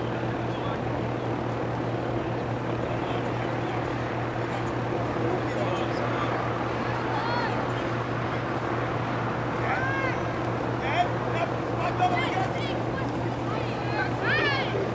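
Faint, distant shouts of players and spectators at a soccer game, a few calls about seven seconds in and more between ten and twelve seconds, over a steady low hum and noise.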